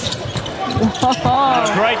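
Basketball bouncing on a hardwood court during live play, a few sharp dribbles in the first second, under commentary.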